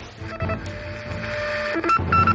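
Electronic intro sting: a few short beeps, a held steady tone, then a quick run of higher beeps near the end.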